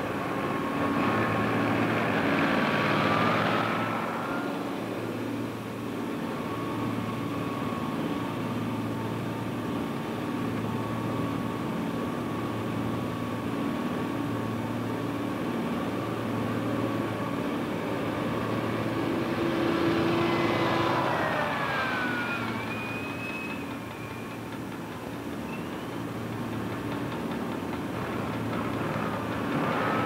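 Engine of a bomb-loading lift truck running steadily under the bomber, with a regular pulsing throb. A whine shifts in pitch about three seconds in and again around twenty seconds, where the sound swells.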